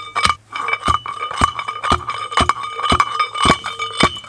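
A metal bar pounding oyster shells inside a homemade crusher made from a metal pipe with a welded-on bottom. There are about seven strikes, roughly two a second, and the pipe rings with a steady metallic note between them.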